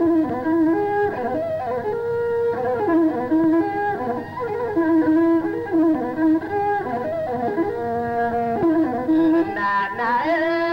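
Masinqo, the Ethiopian one-string bowed fiddle, playing a melody that slides and glides between notes, without singing.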